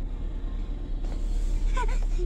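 Steady low rumble of a car's engine and road noise heard from inside the cabin while driving slowly. A short high-pitched voice sound comes near the end.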